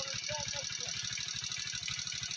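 An unseen engine idling: a steady, rapid low chugging with an even beat. Faint distant voices are heard briefly in the first second.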